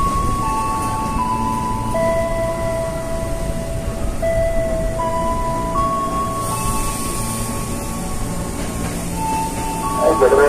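JR East 203-series electric commuter train rumbling at the platform, with a slow melody of long held notes playing over it.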